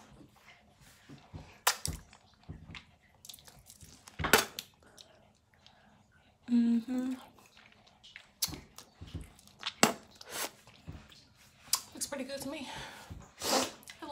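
Wet mouth sounds: scattered lip smacks and tongue clicks after tongue cleaning, with a short hum about halfway and a brief vocal sound near the end.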